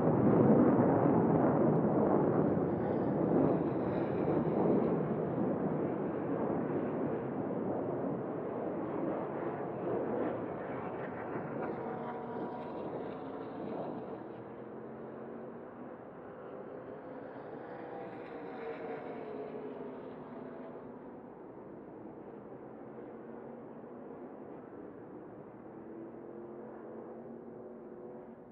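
Race trucks' V8 engines running on track, loudest at first and gradually fading, with engine notes rising and falling in pitch as trucks go by.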